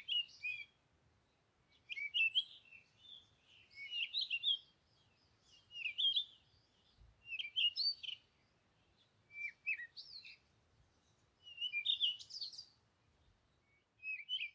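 A small songbird singing short, quick twittering phrases high in pitch, one about every two seconds, with near silence between them.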